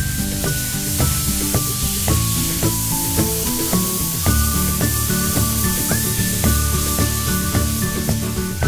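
Steady hiss of a spray gun's compressed air spraying paint, heard under background music.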